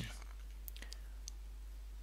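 Quiet pause with a low steady hum and light hiss, broken by a few faint clicks in the first second and a half.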